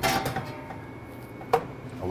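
Handfuls of sticky ground salami mixture squelching as they are pulled from a steel mixer bowl, with one sharp slap about one and a half seconds in.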